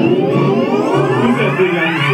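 Electronic music played live: a synthesizer sweep rising steadily in pitch over about two seconds, with the deep bass dropped out beneath it.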